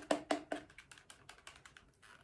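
Rapid light plastic clicks and taps from a tube of bubble solution being opened and its wand drawn out. The clicks come thickest in the first half second and thin out after.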